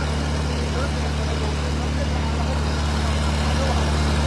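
Fire truck engine idling close by: a steady low hum that holds even throughout.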